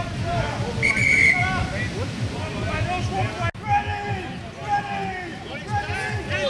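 Referee's whistle blown once, about a second in, a steady shrill blast of about half a second. Players and spectators are shouting throughout, over a low buffeting of wind on the microphone.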